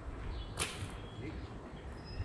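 A petanque boule landing on the loose gravel court about half a second in, giving one short gritty rasp as the stones scatter, over a steady low rumble.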